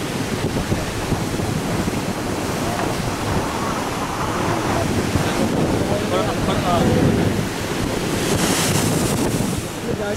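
Rough sea surf breaking and churning against a rocky shore, with wind buffeting the microphone. A louder rush of surf comes near the end.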